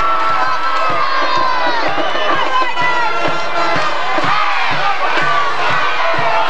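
Football crowd in the stands shouting and cheering continuously as a play is run, many voices yelling over one another.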